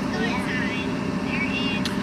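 Car engine idling while it warms up, a steady low hum heard from inside the cabin.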